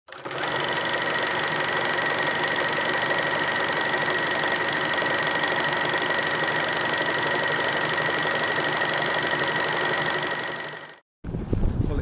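Film projector sound effect: a steady mechanical whir and clatter with a high whine, fading out near the end.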